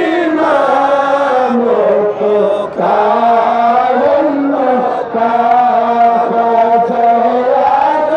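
Men's voices chanting together into microphones, a devotional salutation to the Prophet sung in long, held, sliding phrases with short pauses for breath about three and five seconds in.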